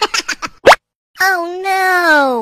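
Cartoon sound effects: a few quick pops and one rising plop, then a short gap and a child's voice held for about a second, falling in pitch at the end.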